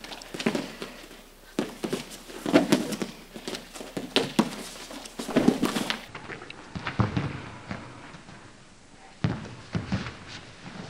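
Wrestlers' feet scuffing on a foam wrestling mat and bodies thumping onto it as a headlock takedown is run through, a string of irregular short knocks and scuffs. The sound changes abruptly about six seconds in at a cut to another repetition.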